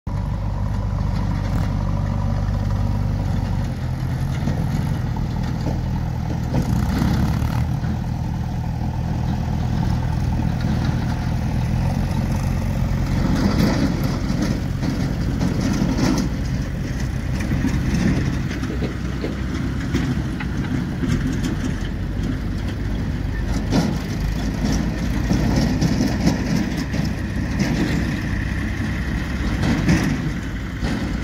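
Diesel engines of tractors and a JCB backhoe loader running steadily. The engine note shifts pitch a few times, with rougher stretches partway through.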